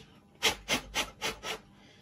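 Five quick short strokes of hissing, scratchy noise, about four a second, as solder splatter is cleaned off a Hornby Dublo Ringfield motor's armature.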